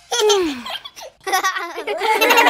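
Cartoon character voices laughing: a high voice slides downward, then quick childlike giggling starts about two-thirds of the way in.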